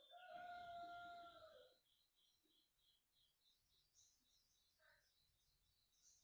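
Faint animal calls: a steady run of short, high chirps repeating several times a second throughout, and just after the start one held call lasting about a second and a half, with a shorter faint call near the end.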